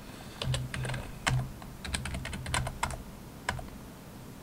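Typing on a computer keyboard to enter a user name and password at a login prompt: two short runs of key clicks, then a single keystroke near the end.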